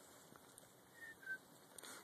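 Near silence: faint outdoor background, with two brief, faint high chirps a little after a second in.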